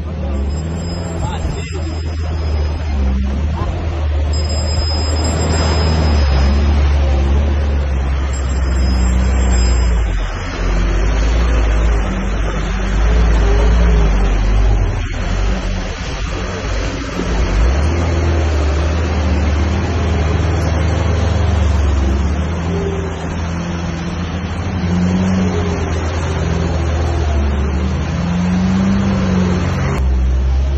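Off-road 4x4's engine running steadily at low revs in low range, with tyres working through mud and puddle water on a rutted track. The engine hum drops back for a few seconds around the middle, then picks up again.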